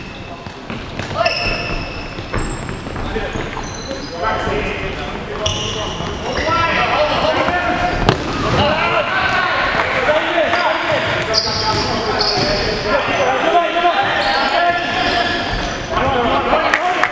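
Futsal being played on a wooden hall floor: shoes squeaking, the ball knocking off feet and floor, and players calling out, busier from about six seconds in.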